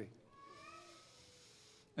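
A faint, brief pitched voice-like sound, well under a second long, with a fainter held tone after it, over low room tone.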